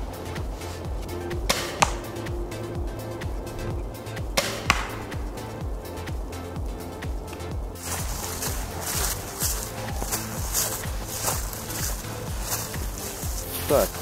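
Background music with a steady beat, over two sharp cracks of a crossbow with recurve limbs shooting, the first about two seconds in and the second about two and a half seconds later. A rustling hiss comes in during the second half.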